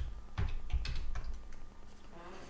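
Computer keyboard typing: a few separate keystroke clicks, bunched in the first part of the second and a half.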